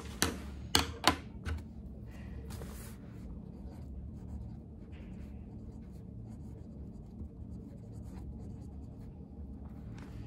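Handwriting on notebook paper, a soft intermittent scratching of the pen tip. Opens with a few sharp clicks and taps in the first second and a half.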